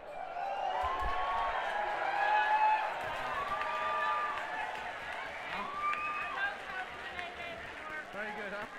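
A crowd of people talking and calling out over one another, with several drawn-out shouts, and little or no music.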